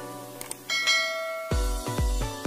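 A short click sound effect, then a bright bell-like chime ringing for under a second, the notification-bell sound of a subscribe-button animation, over a plucked-note music loop. A heavy-bass electronic dance beat kicks in about one and a half seconds in.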